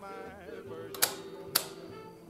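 Grundig TK149 reel-to-reel tape recorder running with a steady hum, freshly re-belted and under test. Its piano-key transport controls clack twice, about half a second apart, as the modes are switched.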